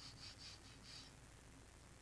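Near silence, with a few faint, soft strokes of a flat brush across Arches cold-pressed watercolour paper in the first second, laying thin horizontal lines.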